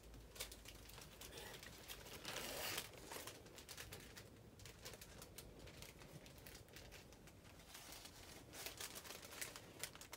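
Faint rustling and scattered light clicks, with one louder rustle about two to three seconds in.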